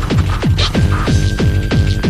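Fast free-party tekno from a DJ mix: a pitch-dropping kick drum pounding about four beats a second, with a steady high synth tone held over it.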